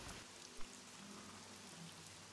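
Faint steady hiss with a single small click a little over half a second in.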